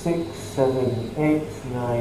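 Speech only: a man's voice counting aloud slowly, one number about every half second.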